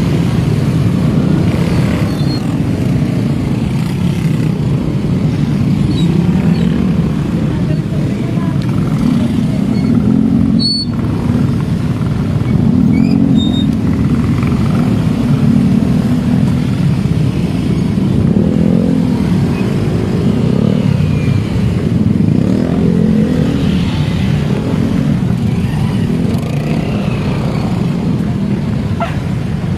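Many motorcycles running together in a dense pack, a continuous low engine rumble with engine notes rising and falling as riders work the throttle, heard from among the moving bikes.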